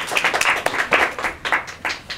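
A small audience applauding, many overlapping hand claps that die away near the end.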